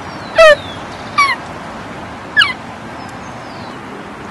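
A woman vocally imitating a dog yelping after being struck: three short, high yelps, each falling in pitch, the first the loudest.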